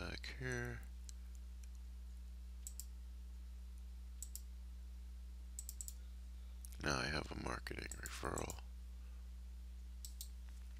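Computer mouse clicks as folders are opened in File Explorer: a single click a few seconds in, another about four seconds in, then a quick double-click past the halfway mark. A man's voice murmurs briefly at the very start and again, louder, about seven seconds in, over a steady low hum.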